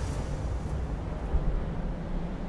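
A low, steady rumble with no other clear sound.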